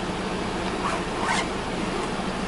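Zipper on a soft cooler bag being pulled shut, two short zipping strokes about half a second apart over a steady low hum.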